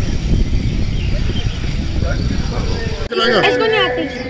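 Wind rumbling on the microphone of a camera carried on a moving bicycle, with faint voices in the background. About three seconds in it cuts off abruptly to close conversation.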